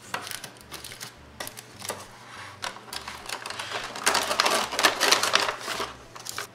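A Mylar bag crinkling as crisp freeze-dried French toast slices are handled and slid into it, with scattered light clicks and taps. The crinkling is loudest and densest from about four seconds in.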